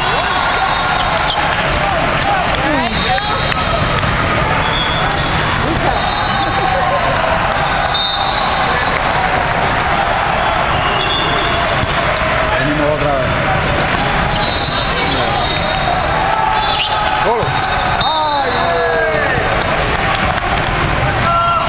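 Din of a large indoor hall with several volleyball matches in play: many voices and shouts, balls being struck and bouncing on the courts, and repeated short high whistle blasts from referees on nearby courts.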